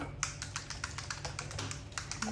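Rapid, even plastic clicking, about ten clicks a second, as a baby's milk bottle is shaken to mix the formula.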